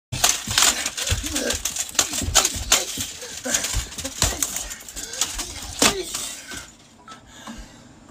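Computer keyboard being smashed repeatedly against the floor: hard plastic cracks and clattering keys, about two or three blows a second, stopping about three quarters of the way through.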